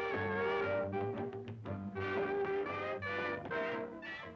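Swing jazz band with brass playing an instrumental passage between sung lines: held horn chords over a steady bass, changing every half second or so.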